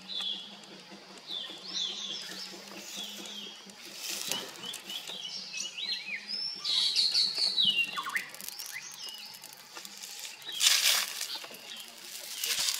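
Birds chirping and singing in short, repeated, pitch-sliding phrases over a faint steady low hum. Brief rustles of leaves and dry grass being handled come about four seconds in and again near the end.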